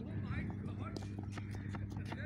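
Distant shouts and calls of players on the cricket field. Sharp clicks come about three a second, over a steady low hum.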